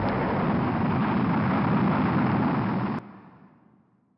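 Rocket-launch sound effect ending a hip-hop track: a steady rushing rumble that cuts off sharply about three seconds in, leaving a short tail that dies away.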